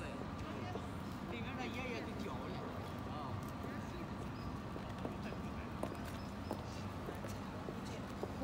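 High-heeled boots clicking on brick paving, a few scattered heel strikes over steady street background noise.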